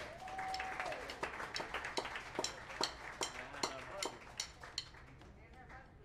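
Applause from a small audience, with separate hand claps heard one by one, thinning out and dying away about five seconds in. A voice holds a short single note at the very start.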